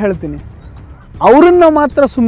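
A man's voice speaking emphatically: a phrase trails off at the start, and a loud drawn-out phrase with a rising-then-falling pitch comes about a second in.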